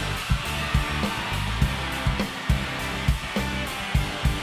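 Live rock band playing: drum kit with repeated kick and cymbal hits under bass and a dense wash of electric guitars, through a festival PA.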